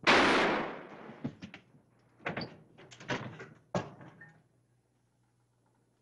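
A single gunshot with a ringing tail that fades over about a second, followed by several sharp knocks and thuds over the next few seconds.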